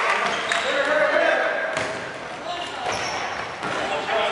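Dodgeballs bouncing and thudding on a wooden gym floor, a few sharp strikes, with players calling out, echoing in a large sports hall.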